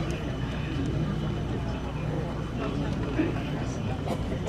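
Indistinct voices and crowd murmur over a steady low hum.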